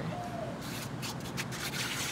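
Small trigger spray bottle misting water onto seed-tray soil: a quick run of short hissing sprays, one per squeeze of the trigger, starting about half a second in.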